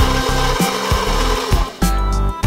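KitchenAid Professional HD stand mixer running, its flat beater creaming the mixture in the steel bowl: a steady noisy whir that cuts off shortly before the end, with background guitar music.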